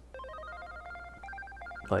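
Quiet background music: a melody of short, clear notes stepping up and down in pitch.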